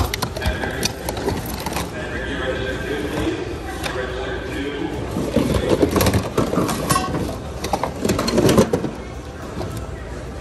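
Hard plastic and metal household items clattering and knocking together as a bin of mixed goods is rummaged through by hand, busiest about halfway through and again near the end. Other people's voices carry in the background.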